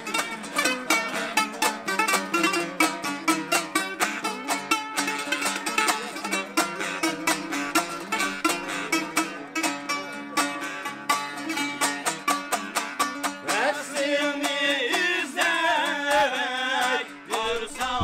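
Uyghur long-necked lute played with fast plucked notes in a traditional muqam melody. In the last few seconds a gliding, sustained melodic line joins in over the plucking.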